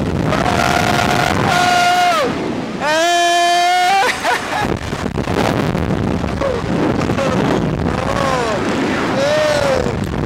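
Young men on a slingshot thrill ride yelling, with two long held yells in the first four seconds and then shorter rising-and-falling whoops, over wind rushing across the microphone as the ride swings them through the air.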